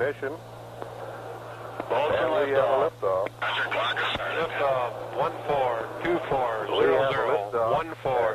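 Narrow, radio-transmitted voices on the launch communications loop, over a steady low hum. The talk starts about two seconds in and runs to the end.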